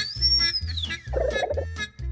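Background children's music with a steady bass beat, overlaid with cartoon sound effects: a whistle that rises and falls over the first second, then a short warbling burst just past the middle.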